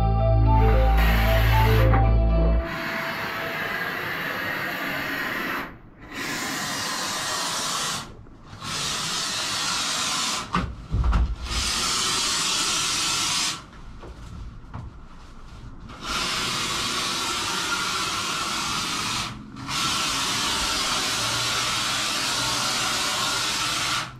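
Two-component polyurethane spray foam gun (Touch 'n Foam System 600 kit) hissing as it sprays foam, in runs of two to four seconds broken by short pauses where the trigger is let go.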